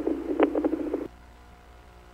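Police radio channel at the tail of a transmission: narrow-band hiss with one short blip, cutting off suddenly about a second in as the transmitter unkeys. After that only a faint steady hum.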